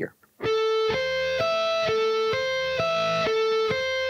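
Electric guitar (Music Man Majesty) playing a slow sweep-picked A minor seventh arpeggio, pushing the pick through the strings one note after another. About eight clear, sustained notes change roughly twice a second, starting about half a second in.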